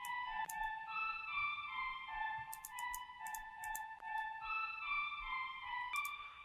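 Software flute instrument in Logic Pro X playing back a melody of short held notes that step up and down about twice a second.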